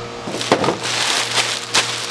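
A thin plastic bag crinkling and rustling in the hands, with scattered sharp crackles.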